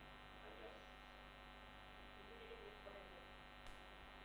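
Near silence: steady mains hum on a lapel-microphone recording, with faint traces of a voice far off the microphone and a tiny click near the end.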